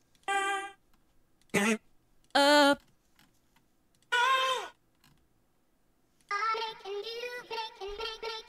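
Short female vocal one-shot samples from a deep-house sample pack previewed one after another: four brief sung notes and ad-libs separated by silences. About six seconds in, a rhythmic, pitched-up "helium" female vocal loop starts playing and repeats.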